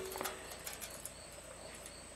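Quiet workshop room tone with a faint, steady, high-pitched whine and a couple of faint ticks near the start.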